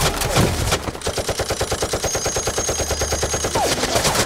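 Machine gun firing a long continuous burst in a film soundtrack, about ten shots a second, with a short falling whine near the end.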